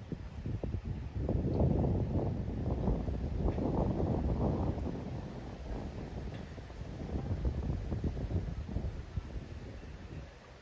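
Wind buffeting the microphone in uneven gusts, a rumbling rush that swells about a second in and eases off through the second half.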